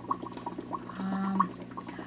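Small aquarium filter's water trickling and gurgling steadily, with a low hum under it. A voice holds a short hesitating 'um' about a second in.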